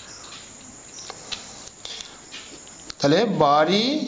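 Faint, steady chirring of crickets for about three seconds, then a man's voice starts speaking near the end.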